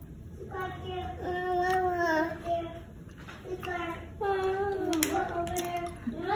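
A high voice holding long, slightly wavering sung notes, in two stretches of about two seconds each with a short pause between them.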